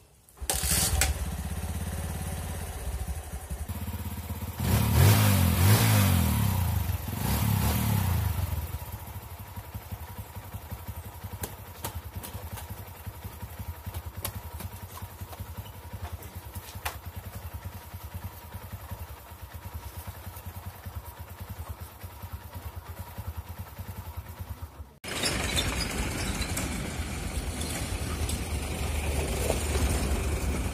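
A small motorcycle engine starts and runs, is revved up twice a few seconds in, then idles steadily. About 25 seconds in the sound cuts to the steady running of another vehicle's engine.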